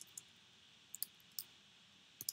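Faint computer keyboard keystrokes: about four separate key clicks, spaced unevenly, over a steady faint hiss.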